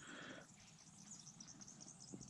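Near silence: faint outdoor background with faint, high-pitched insect chirping.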